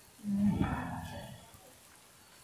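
A low, drawn-out voice-like groan, about a second long, starting on a steady low note and then fading.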